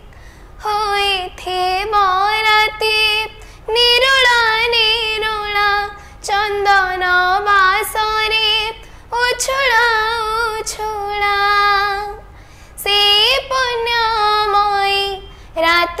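A young girl singing an Odia devotional bhajan solo, in phrases of a few seconds each with sliding, wavering pitch, broken by short breath pauses.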